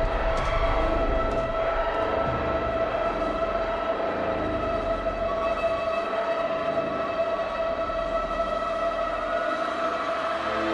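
A large festival crowd cheering and screaming in the break right after a song ends, a dense steady roar with a few steady high tones held underneath.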